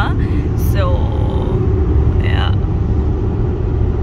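Car driving at highway speed, heard from inside the cabin: a steady low rumble of tyre, road and engine noise.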